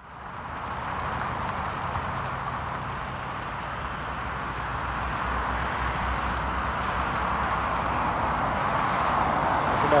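A distant Cessna 172's four-cylinder piston engine and propeller running on the runway: a steady drone with a low hum beneath it, slowly growing louder.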